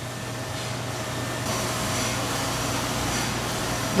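Steady mechanical hum and hiss, growing slightly louder over the first couple of seconds, then holding.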